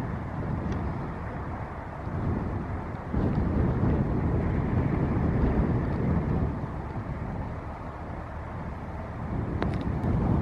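Low rumbling noise that swells and eases every few seconds: wind on the microphone mixed with the running noise of a passing coaster cargo ship.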